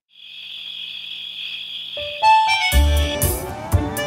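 Cartoon soundtrack: a steady high cricket-like chirring, then about two seconds in, music comes in with a few keyboard notes, a bass beat and rising electronic sweeps.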